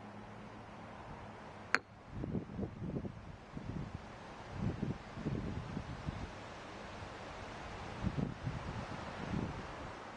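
Marble pestle working soaked barley grains in a marble mortar to loosen the husks. A single sharp tap comes about two seconds in, then soft, dull crunching and grinding in several short spells.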